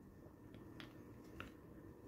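Near silence with three faint, short clicks, from hands turning a PVC figure on its plastic base.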